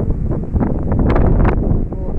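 Wind buffeting the phone's microphone: a loud, uneven low rumble in gusts, loudest a little past a second in.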